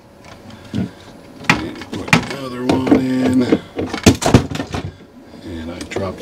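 DeWalt 20V battery packs being slid into the battery slots of a battery-powered car refrigerator, with several sharp plastic clicks and knocks as they seat.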